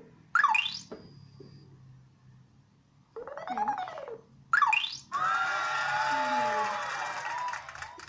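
Electronic sound effects from the LEGO WeDo 2.0 app, played through a tablet speaker: twice, a tone that rises and falls in pitch followed by a fast upward sweep, then a longer, noisier effect with wavering tones from about five seconds in until near the end.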